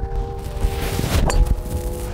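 A golf driver from a budget supermarket package set swinging and striking a teed ball, a single sharp impact about a second and a quarter in, over soft background music with held notes.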